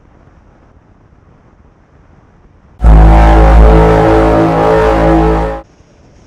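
A loud, deep, steady tone with many overtones at one unchanging pitch. It starts abruptly about three seconds in and cuts off sharply almost three seconds later, after faint low background noise.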